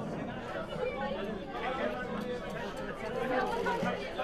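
Indistinct chatter of several people talking at once, voices overlapping throughout with no single clear speaker.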